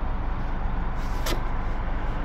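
Steady low rumble of background noise, with a single short hiss a little past a second in.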